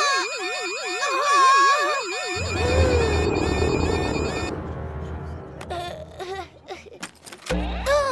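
Shop anti-theft gate alarm, a cartoon sound effect: a fast warbling siren rising and falling about four times a second, signalling an unpaid item carried through the gates. About two and a half seconds in it gives way to a deep rumble.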